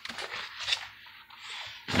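Large paper blueprint sheets rustling and crinkling as pages are turned by hand.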